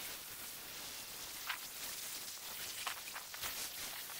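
A garden-hose foam blaster spraying a thin, watery foam onto a car's body panels, heard as a steady hiss of spatter like rain on a surface. Two brief ticks come through, one about one and a half seconds in and one near three seconds.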